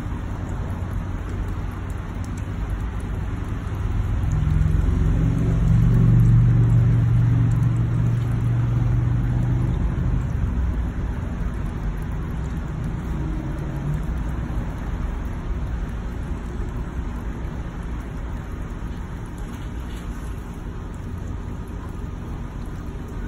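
Steady noisy background with a low vehicle engine hum that grows louder about four seconds in and fades away after about ten seconds, returning faintly a little later.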